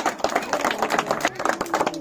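A small group of people clapping their hands, fast and continuous, with voices mixed in.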